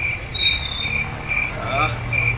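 Insect chirping in short, even, high-pitched pulses, a little more than two a second, over low outdoor background rumble.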